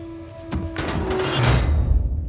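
Film soundtrack: music under a rushing swell of noise that builds to a heavy, low thud near the end, as a hand grenade drops onto the truck's steel floor.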